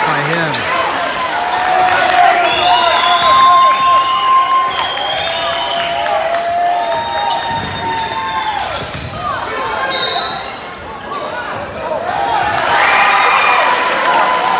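Basketball shoes squeaking on a hardwood court, many short squeaks that rise and fall in pitch, with a ball bouncing and voices echoing in a gym. It quietens briefly a little past the middle.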